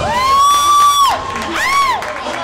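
A high-pitched voice whooping: a long call that slides up and is held for about a second, then a shorter call that rises and falls near the end.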